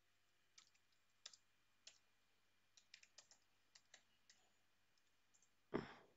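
Faint computer keyboard typing: about a dozen soft, scattered key clicks over the first four seconds. A short, louder noise comes near the end.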